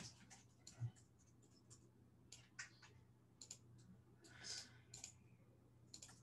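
Near silence: faint room tone with a low steady hum and scattered soft clicks and taps, with a soft thump just under a second in.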